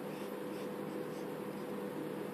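Wacom pen nib scratching across the Cintiq 15X pen display's screen in a few short drawing strokes. The scratching is faint, over a steady background hum and hiss.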